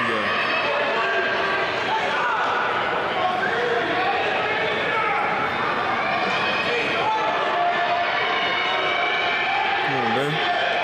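Crowd of spectators cheering and calling out to runners in a large indoor track arena, many voices overlapping at a steady level.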